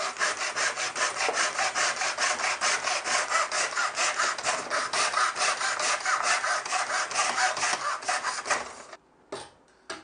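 Nobex-style hand mitre saw crosscutting a timber board, with a steady run of quick, even back-and-forth saw strokes. The sawing stops near the end, as the cut goes through.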